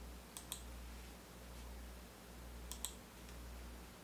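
Computer mouse clicks: two quick pairs of clicks about two seconds apart, over a low steady hum.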